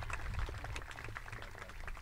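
Faint, scattered hand claps from an audience, thinning out after the first moment, over a steady low rumble.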